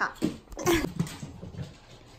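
Long-coat Chihuahua puppy giving a few short cries, the loudest a little under a second in, excited as its meal is announced.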